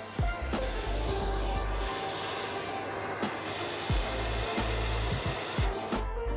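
Vacuum cleaner running steadily, its brush nozzle drawn along a freshly sanded mirror frame to pick up the sanding dust, with background music underneath.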